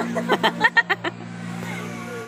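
Women laughing in a quick run of short bursts during the first second, over a steady low hum.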